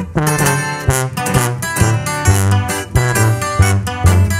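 Instrumental music: guitar picking a quick melody over strummed guitar, with a tuba playing a bass line of low notes that change every beat or two.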